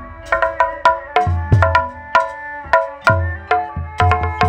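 Sundanese gamelan accompaniment to ronggeng dancing, an instrumental passage: a quick, even run of ringing struck metallophone notes over low hand-drum strokes, with no singing.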